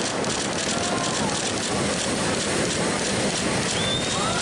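Heavy ocean surf: a steady rushing hiss of a big wave breaking and spray on the water.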